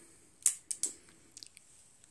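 Metallic clicks of a Ruger Blackhawk .357 Magnum single-action revolver as its hammer is cocked and the trigger squeezed on an empty gun, a dry fire. One sharp click comes about half a second in, then two lighter clicks, then a few faint ticks.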